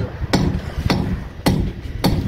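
Hammer blows on a building site: three sharp strikes at an even pace, a little over half a second apart.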